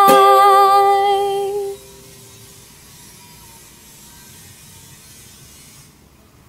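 The end of a song sung to ukulele: a last strum and a long held sung note with a wavering pitch that fades out within about two seconds, leaving faint hiss.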